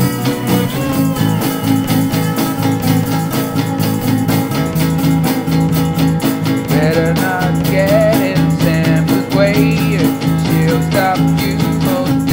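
Rock music with guitar over a steady beat and bass line, no singing; about halfway through a bending, wavering lead melody comes in on top.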